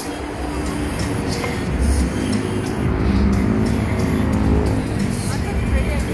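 Busy street traffic, cars passing continuously as a steady rumble, with music playing and indistinct voices in the background.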